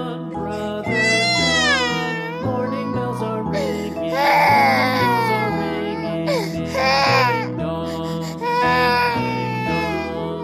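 Baby crying in four wailing cries, each with a bending, falling pitch, over gentle background music.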